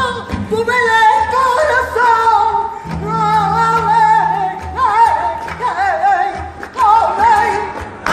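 A woman singing flamenco por bulerías, long ornamented lines that waver in pitch, over flamenco guitar and hand-clapping (palmas).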